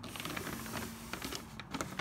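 Brown kraft paper rustling and crinkling under a hand as it is pressed flat against a plywood panel, a scatter of small irregular crackles.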